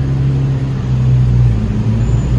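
A steady low engine-like hum, strongest in the first part and easing off about one and a half seconds in.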